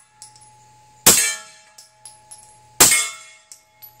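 Two suppressed shots from a Kimber Custom TLE/RL II 9 mm 1911 fitted with a Griffin Revolution suppressor, firing 147-grain handloads. The shots come about a second and a half apart, and each is a sharp crack followed by a metallic ring that fades over about a second.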